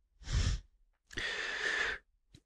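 A person breathing close to a microphone: a short breath about a quarter second in, then a longer, steadier breath through the second half.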